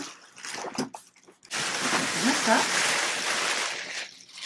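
Thin plastic packaging bag crinkling loudly as it is pulled off a padded softbox carrying bag. It starts about a second and a half in and runs for over two seconds, after a few soft knocks of handling.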